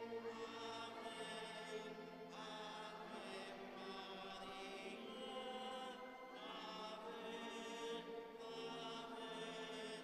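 Slow sacred singing, a chant or hymn in long held notes that change every second or two.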